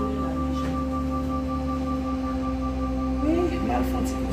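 A steady electronic drone holding one pitch, its upper tone faintly pulsing, like a sustained background-music pad; a brief voice glides in near the end.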